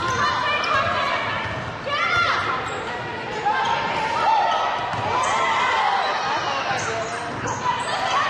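Live basketball play on a hardwood court in a large, echoing gym: the ball bouncing, sneakers squeaking in short gliding chirps, with voices calling on the court.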